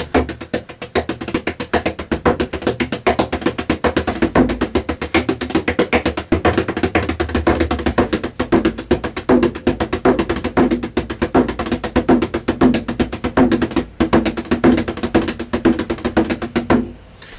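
A Waltons tunable bodhran, a double-skinned frame drum, played with a wooden tipper in a fast, unbroken run of strokes with a deep tone.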